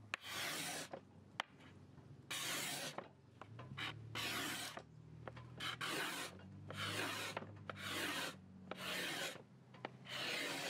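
A hand-held steel scraper drawn over a wooden tabletop, scraping the old finish off in about eight short scratchy strokes, roughly one a second, with brief pauses between them.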